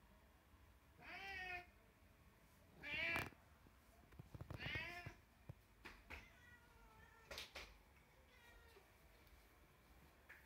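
An animal calling several times: short calls that rise and fall in pitch, three louder ones in the first five seconds, then fainter ones.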